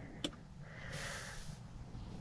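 A light click, then a soft breath-like hiss lasting about a second, over a faint low rumble.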